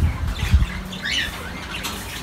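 Caged pet birds in a small aviary, with one brief chirp about a second in and a low thump about half a second in.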